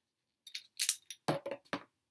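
Hard plastic parts of a clamp-on cell phone holder clicking and clattering as they are handled, with one sharp click about a second in.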